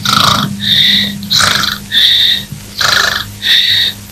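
Cartoon snoring: three rounds of a rasping in-breath followed by a high whistling out-breath, evenly paced about every 1.4 seconds.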